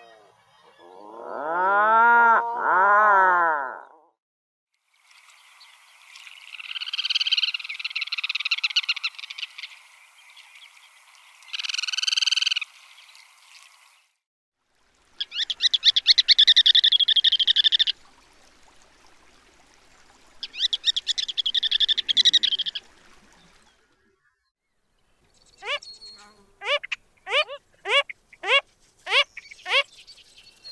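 A run of different water birds' calls. Near the start an Atlantic puffin gives two low, arching calls, followed by other higher calls. Around the middle a ruddy turnstone gives two bouts of fast, rattling chatter, and near the end a phalarope gives a series of short notes, each sliding downward, about one and a half a second.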